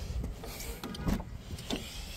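Car door being unlatched and opened: a quick run of clicks and a short rattle about a second in, with another click near the end, over a low background rumble.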